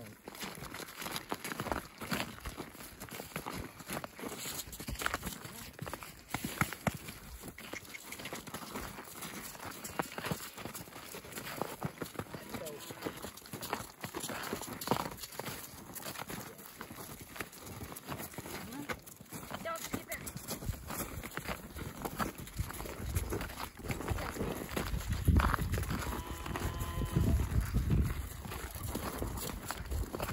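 Footsteps on packed snow and straw: people's boots and a dairy cow's hooves walking along in an irregular run of steps, with a low rumble rising a little before the end.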